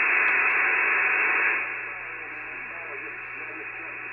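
HF transceiver's receiver on 40 metres giving out band static after the microphone is unkeyed, a hiss with the top end cut off. It comes in suddenly, stays loud for about a second and a half, then settles to a quieter steady hiss as he listens for a reply.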